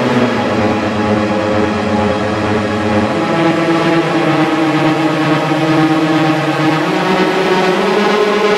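Electronic techno remix in a dense passage of sustained, droning synthesizer chords with no clear drum beat. The low notes shift about three seconds in.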